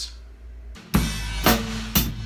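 Drum kit playing a steady rock groove: quarter notes on the hi-hat and bass drum with a two-four backbeat on the snare, coming in about a second in. Strikes fall about twice a second under a ringing cymbal wash, the first hit the loudest.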